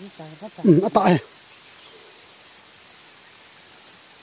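A person's voice for about the first second, then a steady faint outdoor hiss.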